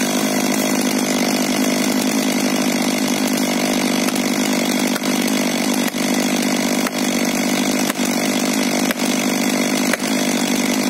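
STIHL MS 500i fuel-injected two-stroke chainsaw idling steadily after the cut. From about five seconds in, an axe drives a felling wedge into the back cut with sharp strikes about once a second.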